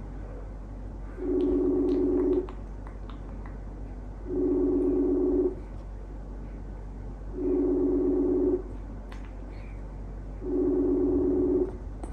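Smartphone ringback tone of an outgoing call waiting to be answered: four identical steady tones, each just over a second long, repeating about every three seconds.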